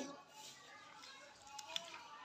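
Faint stirring of watery chhole in a steel kadhai with a steel ladle, the liquid sloshing softly, with a few light clicks of the ladle against the pan about one and a half seconds in.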